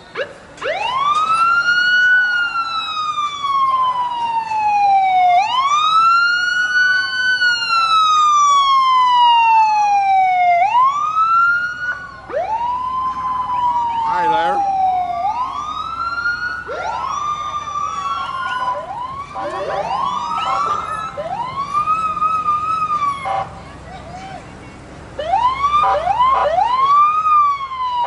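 Emergency vehicle siren sounding in repeated cycles, each sweeping quickly up in pitch and falling slowly back. The cycles are a few seconds long at first, then get shorter and faster. It breaks off briefly near the end and comes back with a few quick whoops.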